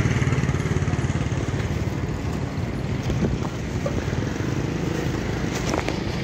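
A motor vehicle engine running close by: a steady low rumble with a fast, even pulse that holds its level.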